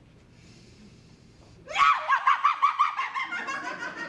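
A high voice making a rapid run of short yelping cries, about six a second, starting just under two seconds in and trailing off: a made-up noise for an improv 'Ball of Noise' acting exercise.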